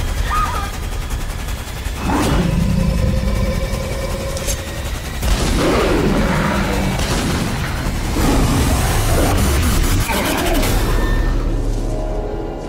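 Horror-trailer sound design: heavy low booming hits every two to three seconds over a deep rumble, with shrill cries sweeping up and down between them.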